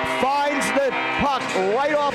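A man's play-by-play hockey commentary, speaking continuously.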